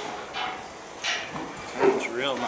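An American Saddlebred horse moving under a rider through straw bedding, its steps and breathing giving three short noisy beats about two-thirds of a second apart, the last the loudest.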